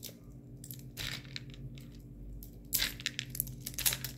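Plastic packaging of a supplement bottle crinkling and crackling as it is handled and unwrapped, in two spells: one about half a second in and a longer one near the end.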